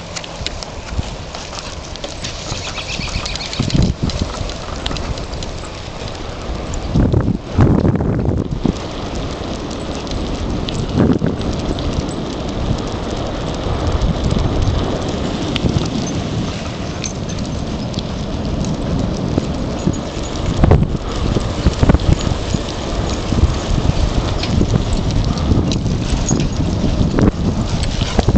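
Continuous rolling noise of a bicycle moving along an asphalt path, with wind rumbling on the microphone in irregular gusts.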